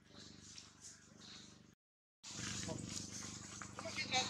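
Indistinct voices over a low steady hum. The sound cuts out completely for about half a second just before halfway, then comes back louder.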